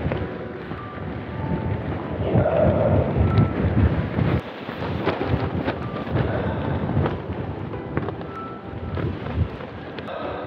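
Gusty wind of about 25 mph rumbling on the microphone, rising and falling in waves and loudest two to three seconds in.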